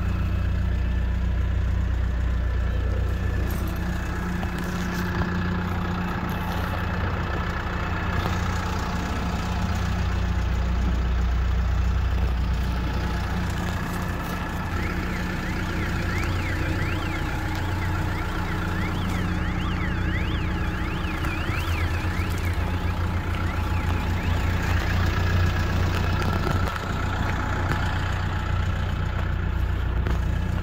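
Kia Bongo 3 truck engine idling steadily. For several seconds in the middle, a warbling, alarm-like tone rises and falls rapidly over it.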